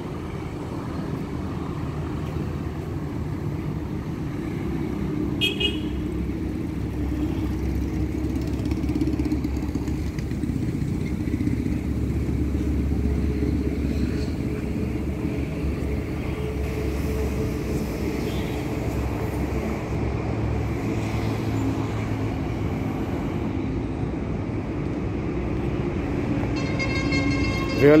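Steady engine and traffic rumble with a short horn toot about five seconds in.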